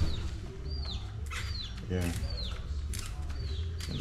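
A bird calling over and over, each call a short high note that falls in pitch, one or two a second, over a low steady hum.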